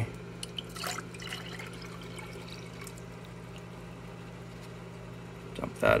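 Water poured from a plastic funnel into a glass measuring cup: a faint splash and trickle, strongest in the first second or so, then fading to a soft, steady run.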